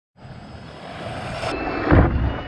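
Radio-controlled short-course truck driving in fast toward a jump ramp, its motor whine and tyre noise growing steadily louder as it nears, with a heavy thump near the end as its wheels hit the ramp.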